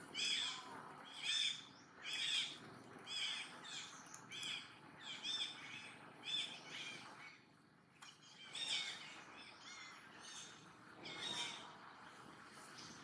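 A bird calling over and over, short high calls about one and a half times a second, with a brief pause a little past the middle.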